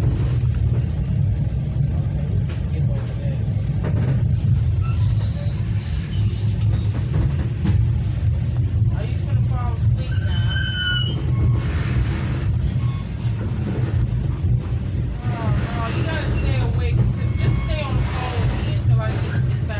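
Steady low rumble of a Metra commuter train car in motion, heard from inside the car, with other passengers talking in the background.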